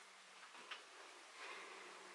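Near silence: room tone with a few faint, short clicks in the first second.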